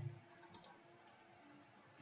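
Near silence, with a faint single computer mouse click about half a second in.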